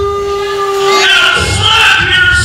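A man's voice over a microphone and PA holding one long high note for about a second, then carrying on in a sung or drawn-out delivery.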